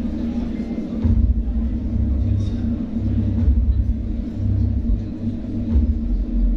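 Suspense music cue over the hall's sound system: a steady low held tone with deep bass pulses that swell about a second in and drop out briefly a few times.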